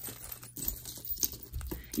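Light, scattered clicks and clinks of costume jewelry (metal and plastic pieces) knocking together as a hand rummages through a pile on a table.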